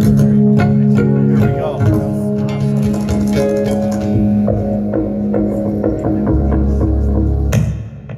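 Two amplified guitars playing a loud passage together: held low notes under a run of picked notes, with a deep low note near the end, then the music breaks off sharply just before a laugh.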